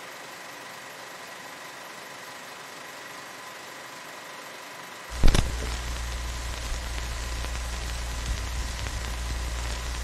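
Vintage-film sound effect: an even crackle and hiss with a faint steady tone, then about halfway through a sudden thump after which a loud low hum runs under the crackle.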